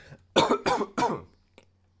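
A man coughing three times in quick succession.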